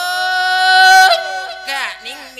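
A monk's voice chanting a Thai Isan lae sermon into a microphone. He slides up into a long, high held note for about a second, then breaks off into a quick wavering run near the end.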